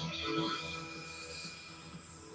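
Faint background music with steady held notes, heard between reps with no strong event of its own.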